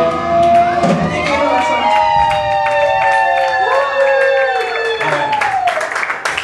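Live punk band's electric guitars ringing out in long, sliding feedback tones as a song winds down, with scattered drum and cymbal hits and the crowd cheering.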